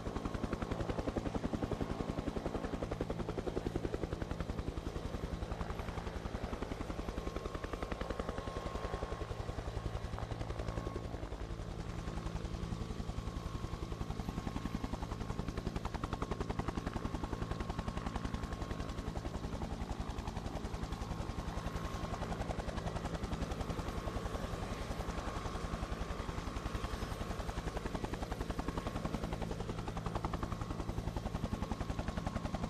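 Helicopter in flight: a steady, rapid rotor chop over an even engine hum, with no change in rhythm.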